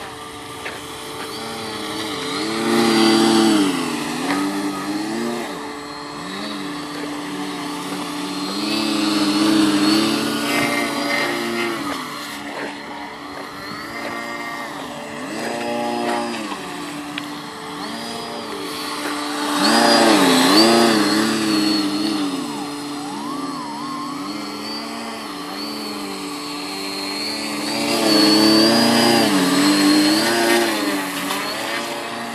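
Electric motor of a radio-controlled car whining as it is driven, its pitch rising and falling in arcs as it speeds up, slows and passes. It gets louder four times, about every seven to ten seconds.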